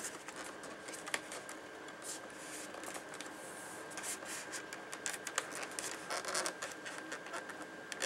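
Faint scratching and small clicks of foam parts rubbing together as a foam RC plane's horizontal stabilizer and elevator are slid into a slot cut in the tail, with one sharper click about a second in. A faint steady hum runs underneath.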